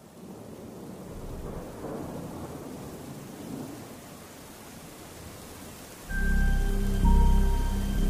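Steady rain with low thunder rumbling. About six seconds in, a louder, low droning music bed with held notes comes in.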